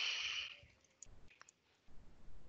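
A breathy exhale fading out in the first half second, then a few faint computer clicks.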